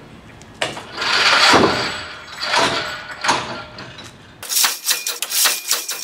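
Drop-test tower testing a retired semi-static rope: the steel test mass is released and rushes down between its guide columns, starting suddenly about half a second in and dying away. A second, shorter drop follows about two seconds later, and a quick series of clicks and rattles comes near the end.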